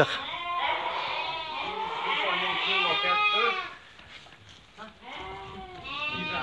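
A flock of sheep bleating, many calls overlapping, with a short lull about four seconds in before the bleating picks up again.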